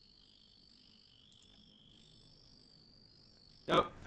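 Faint, steady high-pitched background noise at two pitches, continuous and unbroken, on a video-call audio feed; a short spoken 'Oh' comes in near the end.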